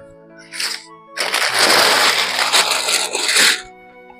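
Silk saree fabric rustling as it is shaken out and spread: a brief rustle about half a second in, then a loud, continuous rustle lasting a little over two seconds that stops short before the end. Background music with sustained notes plays underneath.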